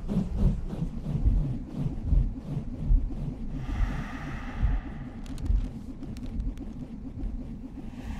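A low, deep rumble pulsing about once a second. A brief hiss rises over it about four seconds in.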